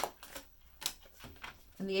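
Tarot card drawn from the deck and laid down on the table: a sharp snap at the start, then a few faint clicks of card handling.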